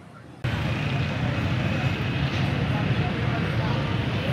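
Steady outdoor street noise, a low rumble of road traffic, starting abruptly about half a second in.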